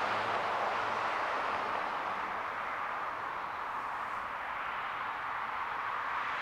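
Steady hiss of road traffic, easing slightly and then swelling again.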